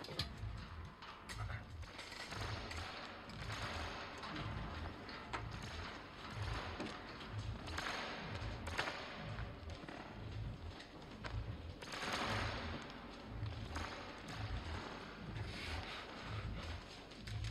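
Suspense film score: a low pulse repeating about one and a half times a second, under a hissing, rustling layer that swells twice, around the middle and again a little later.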